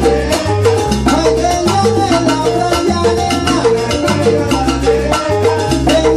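A live salsa band playing, with a steady repeating bass line and busy percussion.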